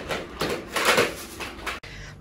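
Rustling and scraping of wood shavings and sawdust being cleared off a laminate floor along a plastic skirting board, with a few light knocks, loudest about a second in and cut off abruptly near the end.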